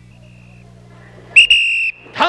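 A whistle blown once: a loud, shrill, steady blast about half a second long, coming about a second and a half in. A fainter short high tone sounds near the start, over a steady low hum.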